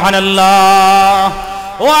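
A man's voice holding one long chanted note in the sing-song delivery of a Bengali waz sermon. It breaks off about a second and a half in, and near the end the voice slides upward into the next phrase.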